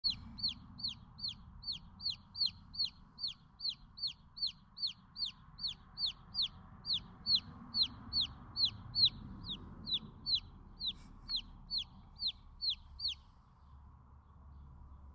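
Baby chicks peeping: a steady run of high, short peeps, each sliding downward in pitch, nearly three a second, stopping shortly before the end.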